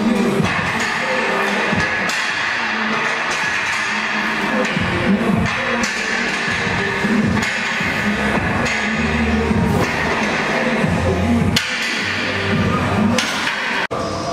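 Music playing continuously, laid over the footage.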